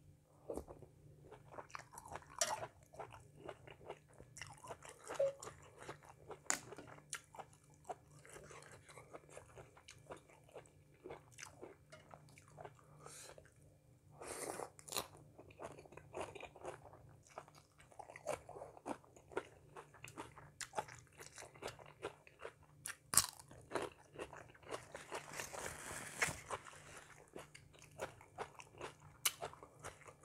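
Close-up eating sounds: quiet, irregular chewing and biting into a spicy Thai pounded-salmon salad with rice noodles, raw cucumber and lettuce, a run of small crunches and mouth noises.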